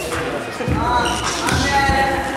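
Music with a singing voice and a steady beat, with a few dull thuds over it.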